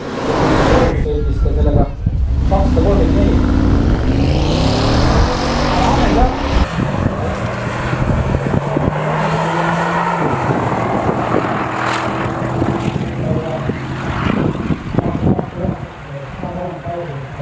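Porsche Cayenne engine under hard full-throttle acceleration on a top-speed run, its note climbing in pitch through each gear with short breaks at the upshifts.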